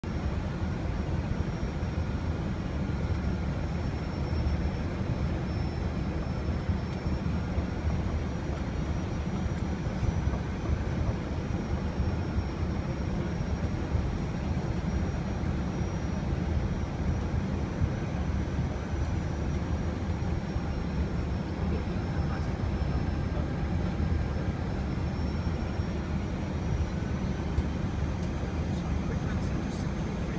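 Steady noise of engines and airflow in an Airbus airliner's cockpit on final approach for landing, heaviest in the low end, with a faint high whine that wavers slightly in pitch.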